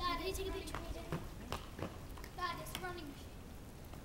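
A child's high voice twice, without clear words, once at the start and again about two and a half seconds in, with scattered sharp clicks between, from inline skate wheels on the paving.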